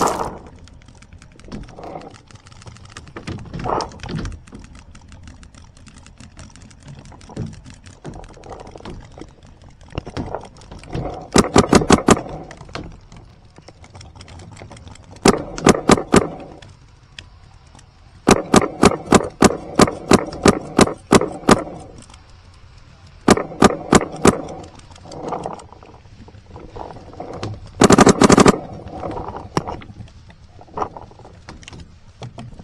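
Planet Eclipse CS2 paintball marker firing five strings of rapid shots, the longest about three seconds, with quiet gaps between strings.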